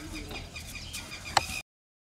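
Chickens clucking faintly in short repeated calls, with one sharp click a little before the sound cuts out abruptly near the end.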